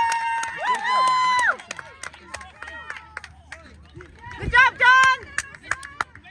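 Spectators at a youth soccer game cheering: high-pitched drawn-out shouts at the start and again about four and a half seconds in, with scattered claps near the end.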